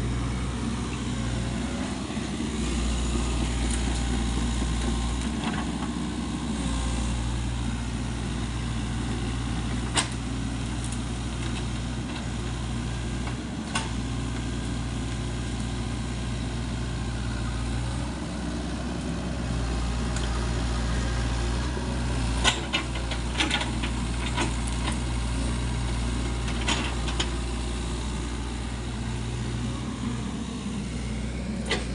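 SANY SY55C mini excavator's diesel engine running steadily as the machine works and tracks across muddy ground, with a few sharp metallic clicks now and then.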